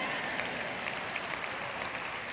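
Large arena audience applauding, a steady patter of many hands clapping at a moderate level.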